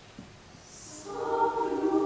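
Large mixed choir of men's and women's voices entering about a second in on a held chord of several steady notes, swelling louder, in a reverberant hall.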